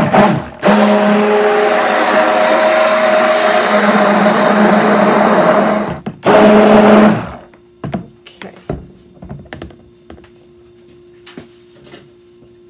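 Stainless stick (immersion) blender running in a tub of cold process soap batter, blending the oils and buttermilk lye solution together: a short blip, then a steady buzz for about five seconds, a brief stop, and one more burst of about a second. A few light taps and clicks follow once it stops.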